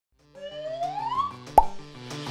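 Title-sequence sound effects: a whistling tone gliding upward over a run of short low notes, ending in a sharp plop about one and a half seconds in.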